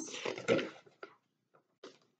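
Faint rustle and brief clicks of a paperback picture book's page being handled and turned, after a voice trails off at the start.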